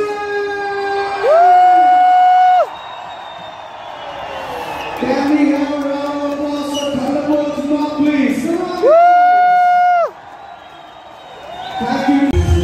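A horn blown twice in long, steady blasts, each about a second and a half with a slight rise in pitch at the start, over the noise of a cheering stadium crowd.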